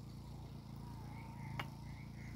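Portable generator running steadily, a faint, even low hum with a regular pulse. A single faint click comes about one and a half seconds in.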